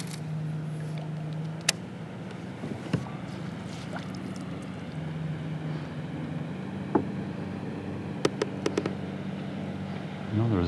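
Steady low hum of a boat motor, swelling slightly at the start and again about halfway through, with a few sharp knocks and clicks, a quick cluster of them near the end.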